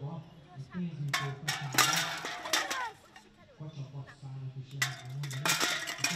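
Stacked aluminium beer cans clinking and clattering as they are hit and topple off a table, in several bursts, with a bigger clatter near the end as much of the tower falls; children's voices.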